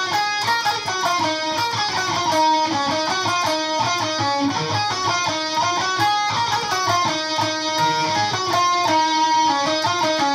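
Cort X-series electric guitar playing a lead melody, a steady run of stepping notes: the first guitar's part of a twin-guitar solo.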